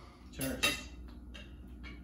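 Tableware clinking on a kitchen counter, from mugs, a plate and utensils being handled. There is a louder pair of clatters about half a second in, then a few light ticks.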